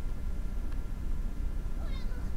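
Audio of a subtitled Japanese anime episode: a low, steady rumble, then a young girl's high-pitched voice starting just before the end.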